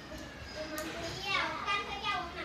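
Young children's voices in a classroom, talking and calling out, with a louder high-pitched voice in the second half.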